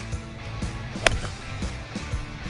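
A six-iron striking a golf ball: one sharp click about a second in, over background music.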